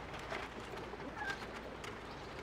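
Thin bamboo strips clicking and rustling against each other as they are woven through basket spokes, with a short bird call a little over a second in.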